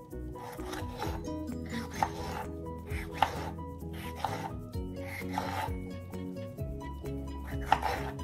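Kitchen knife slicing through a tomato and striking a wooden cutting board in a series of strokes, a few of them sharper knocks, over background music.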